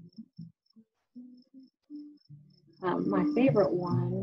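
Crickets chirping steadily, a short high chirp about three times a second. A person starts talking over them about three seconds in.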